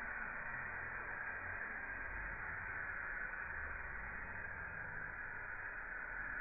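Faint, steady hiss with a low hum, the background noise of a lo-fi recording with no distinct sound events.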